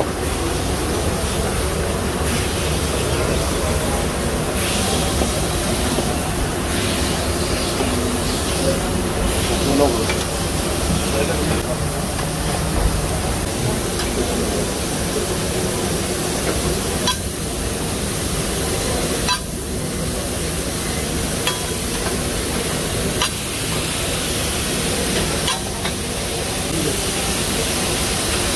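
Smashed beef patties sizzling on a steel flat-top griddle, a steady hiss, with occasional sharp clicks of metal tools on the plate.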